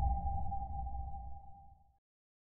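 The fading tail of an electronic intro sting: one held, ping-like tone over a low rumble, dying away to silence by the end.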